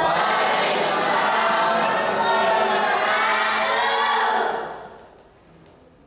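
Many voices sounding together, like a choir or a cheering crowd. It starts suddenly and fades out about four and a half seconds in.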